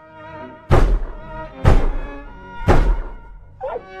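Sustained, pitched music tones held throughout, broken by three heavy thuds about a second apart.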